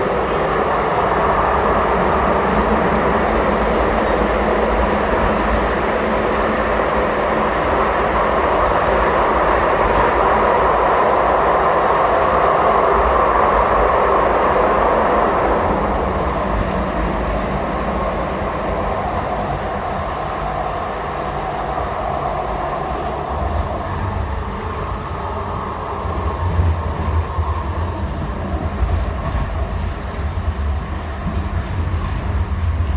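Interior running noise of a Siemens U2 light rail car in motion: a steady loud rush and rumble of wheels and motors that builds toward the middle, then eases into a lower rumble with a few uneven knocks near the end.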